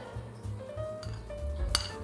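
A metal spoon clinks once against china dishes near the end, a short bright ring. Quiet background music with held notes plays throughout.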